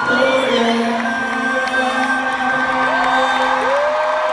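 Large arena concert crowd cheering and whooping, with long held shouts from people close to the phone; one long yell rises, holds and falls near the end.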